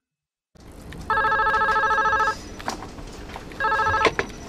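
Telephone ringing with a trilling electronic ring: one ring of just over a second, then a second ring starting about two and a half seconds later, near the end. The call is about to be answered.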